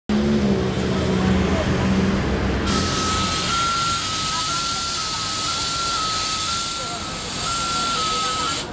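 City street traffic at an intersection: a vehicle engine hums for the first few seconds. About three seconds in, a loud steady hiss starts, along with a high tone that steps back and forth between two close pitches.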